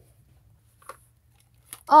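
Quiet room with a faint low hum and one short, faint click about a second in; then a person starts talking in a high-pitched character voice near the end.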